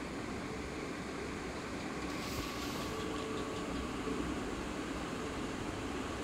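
Steady background hum with a faint hiss and no speech; a brief rise in hiss about two seconds in.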